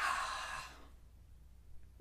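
A soft, short breathy exhale that fades out within the first second, then near silence.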